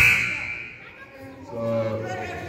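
A basketball bounced once on a hardwood gym floor at the start, the loudest sound, with voices echoing in the hall. A voice comes up again near the end.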